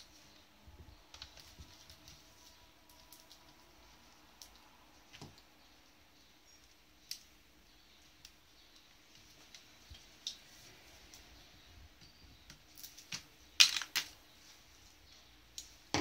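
Scattered light plastic clicks and knocks as an HP CE278A toner cartridge is handled and pried apart with a screwdriver. Near the end comes a quick cluster of sharper, louder snaps as its side end cap comes off.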